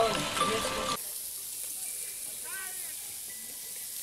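Meat sizzling on a barbecue grill, a steady hiss that takes over about a second in, after a moment of voices.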